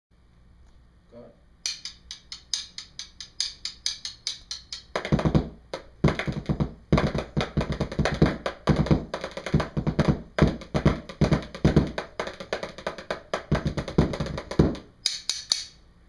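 Drumline cadence on snare drum and tenor drums. It opens with about three seconds of sharp stick clicks in a quick rhythm, then full drum strokes in fast, dense patterns for about ten seconds, and ends with a short burst of stick clicks.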